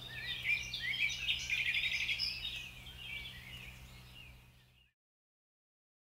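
Songbirds chirping and singing, including a quick run of repeated notes, over a steady low hum. The sound fades out and stops near the end.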